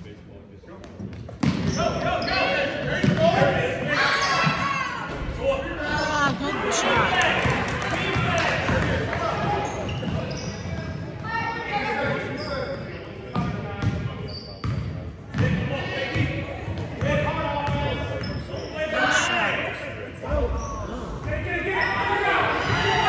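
Basketball bouncing on a hardwood gym floor during play, mixed with shouting voices of players, coaches and spectators, echoing in a large hall. The first second and a half is quieter, and the sound becomes louder and busier from then on.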